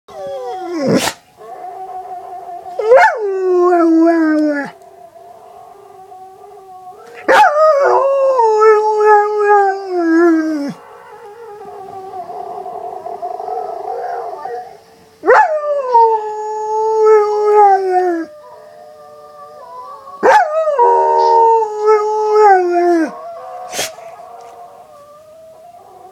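A dog howling: four long howls, each sliding down in pitch over two or three seconds, with quieter sound from a video playing on a laptop between them.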